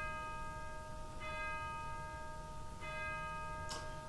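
A bell struck three times at even intervals of about a second and a half, each stroke ringing on with several steady overtones; one stroke rings just as it starts, the next about a second in and the last near three seconds.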